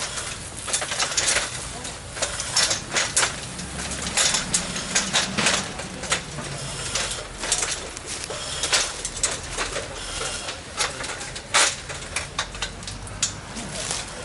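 House fire crackling and popping: sharp, irregular snaps, several a second, over a low steady rumble.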